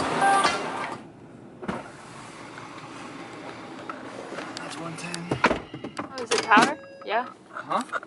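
Steady road noise inside a car cabin, then a sharp click about five seconds in, followed by a run of short squeaky chirps rising and falling in pitch.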